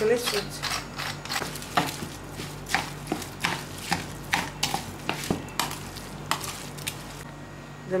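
Hand kneading and mixing a wet stuffing of raw minced meat, rice, grated onion and tomato in a plastic bowl: irregular squelches and taps against the bowl, thinning out near the end.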